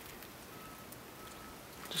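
Quiet outdoor background hiss with no distinct events, and a man's voice starting right at the end.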